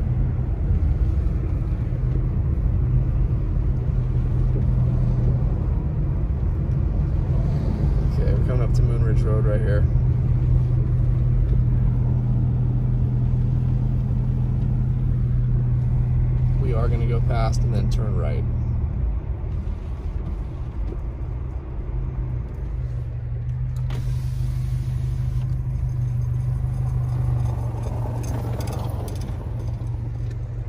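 Road noise inside a moving car: a steady low drone of engine and tyres on a snow-covered road. It drops away about nineteen seconds in and picks up again a few seconds later.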